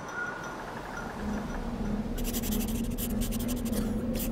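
Quill pen scratching on paper in quick, uneven strokes, starting about halfway through, over a low steady hum.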